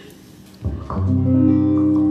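A guitar starts playing about half a second in, then holds sustained chords, the instrumental opening of a song accompaniment.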